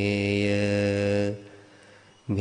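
A Buddhist monk's solo voice chanting in Sinhala, holding one long steady note that breaks off about a second and a half in.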